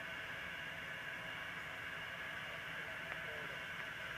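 Steady low outdoor hiss with no distinct event. The hammer's swing and the thrower's turns make no clear sound of their own.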